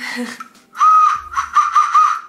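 Small plastic novelty party whistle blown hard: one longer blast, then several short warbling toots.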